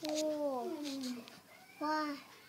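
A toddler's voice: one long call falling in pitch over about a second, then a short call near the end.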